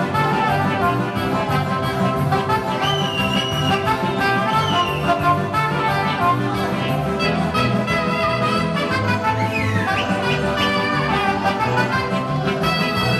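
Live band playing lively dance music with a steady beat.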